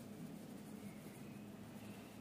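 A pen writing by hand on paper, faint.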